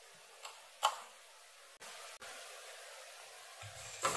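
A few small clicks from a test probe being handled on a router circuit board, the sharpest just under a second in, against faint room tone.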